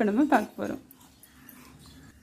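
A woman's voice for the first half second or so, then a quiet stretch of faint room noise.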